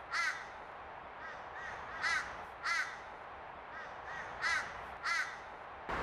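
A bird calling outdoors: short calls, mostly in pairs about half a second apart, repeating every two seconds or so, over faint background hiss.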